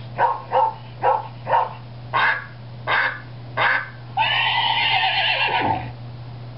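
A Google Home smart speaker playing a string of recorded animal noises. First come four short calls in two quick pairs, then three higher calls, then one long call of about a second and a half that falls in pitch as it ends.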